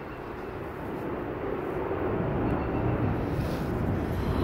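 A distant engine's low, steady rumble that grows louder over the second half.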